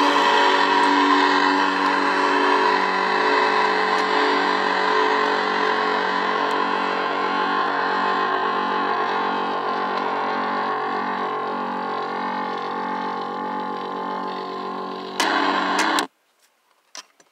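Electric guitar chord left ringing and slowly fading, struck again shortly before the end and then cut off suddenly.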